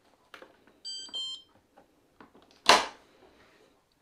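Bauknecht dishwasher's control panel giving two short electronic beeps as its power button is pressed at the end of the cycle, followed a couple of seconds later by a loud clunk as the door is unlatched and pulled open.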